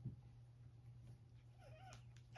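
Near silence: room tone with a steady low hum. Near the end, a brief, faint, wavering pitched call.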